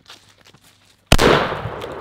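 A single 12-gauge shot from a Panzer BP-12 bullpup shotgun about a second in, a sharp loud crack followed by a long fading echo.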